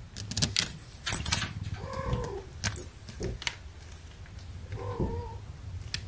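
A young kitten mewing twice, two short calls about three seconds apart, among sharp clicks and scratchy rustles from kittens scrambling over a plush toy. The clicks and rustles are the loudest sounds, most of them in the first half.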